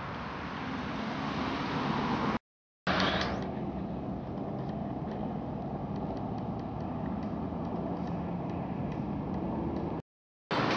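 Road traffic noise from a city avenue: a steady hum of passing cars that swells over the first couple of seconds. It breaks off for a moment of silence about two and a half seconds in, then goes on steadily.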